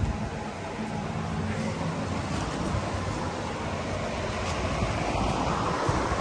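Wind rushing over the microphone as a steady noise, with a short bump right at the start.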